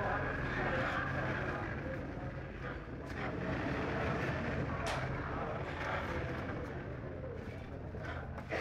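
Murmur of background voices over a steady low hum, with a couple of sharp knocks about three and five seconds in.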